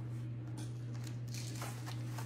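Faint rustling and handling sounds from a damp microfiber mop pad being laid down and a spray mop being picked up, over a steady low hum.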